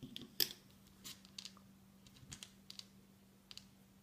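Faint, scattered small clicks and ticks of rubber loom bands being stretched and hooked onto the plastic pegs of a loom, with one sharper click about half a second in. A faint steady hum lies underneath.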